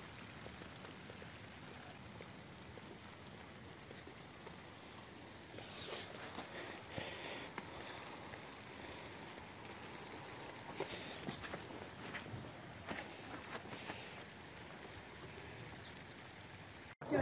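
Faint outdoor background of light rain, with scattered soft ticks and patter over a steady hiss.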